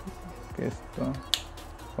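A single sharp plastic click, about one and a half seconds in, from a piece of a magnetic GAN Skewb M Enhanced speed puzzle being handled or snapped into place, over soft background music.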